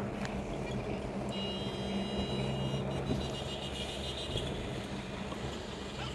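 A vehicle's engine running and its tyres rolling on a sand track, a steady low hum with road noise, from the camera car driving alongside the racing camels.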